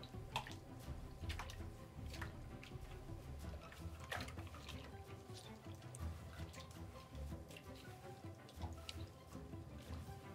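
Faint sloshing and small splashes of water in a sink as a dyed bucktail is squeezed and worked by hand in hot soapy water, over quiet background music.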